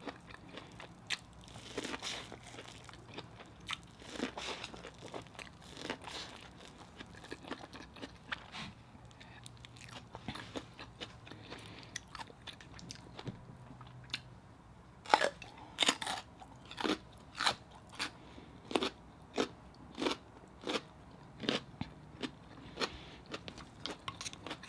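Close-miked chewing and mouth sounds of a person eating. There are scattered wet clicks at first, then, about halfway through, a steady run of sharp chewing smacks about two a second, louder than anything before.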